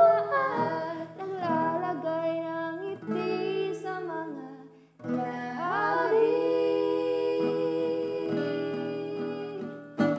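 A solo singer sings a Tagalog ballad over acoustic guitar accompaniment. The voice breaks off briefly near the middle, then holds one long note through most of the rest.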